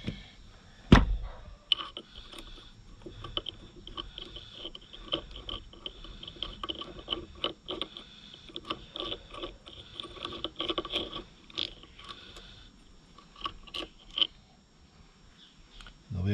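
Hands working the loosened damping-rod bolt out of the bottom of a motorcycle fork leg: scattered small metal clicks and scrapes, after one sharp knock about a second in.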